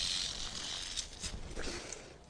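Rattlesnake rattling its tail as a warning: a steady high buzz that fades out about a second in.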